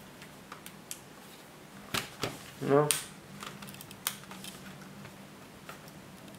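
Plastic case of a netbook being handled, turned over and pressed on: a few sharp clicks and knocks, the sharpest about four seconds in.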